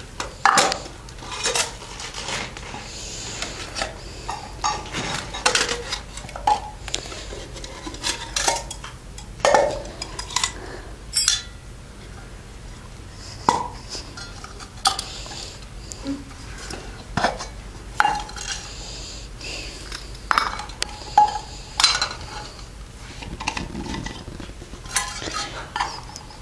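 Metal camping cook-kit pots and lids clinking and clanking irregularly as they are handled, fitted together and set down, a few strikes ringing briefly.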